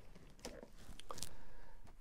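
Faint handling noise of a vinyl LP and cardboard record sleeves being moved and set down on a stack: a couple of light taps and a soft sliding rustle.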